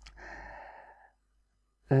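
A man's breathy sigh close to the microphone, about a second long, just after a short click.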